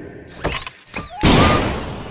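Cartoon-style sound effects: a few sharp clicks and a short rising whistle, then a loud crash about a second and a quarter in that slowly fades away.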